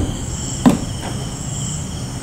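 Steady high-pitched background chirring, typical of crickets, with a short knock about two-thirds of a second in.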